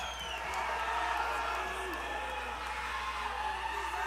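Concert audience cheering and shouting between songs, with a whistle right at the start. Under the crowd there are a few faint steady tones.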